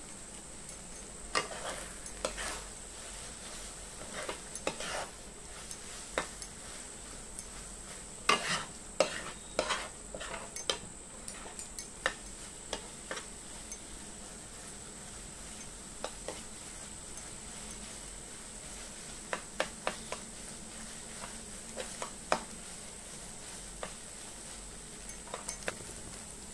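Metal spatula scraping and knocking against a non-stick kadai as noodles are stirred and tossed, in irregular clusters of strokes with pauses between, over a faint steady sizzle from the pan. A thin steady high tone sits underneath.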